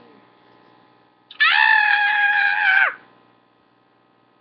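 A person's high-pitched scream, one long call held steady for about a second and a half before it drops away.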